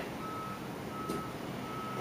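Repeating electronic beep, one steady tone switching on and off about one and a half times a second, three beeps in all. There is a faint click about a second in.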